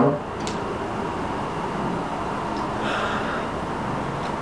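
A person sniffing deeply at a glass jar candle held against the nose, the breath drawn in over steady room noise.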